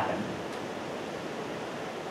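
Steady, even hiss of room tone: background noise of the hall and recording, with no distinct event.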